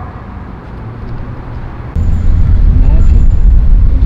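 Quiet street noise, then about halfway through a sudden loud, deep rumble of a car driving.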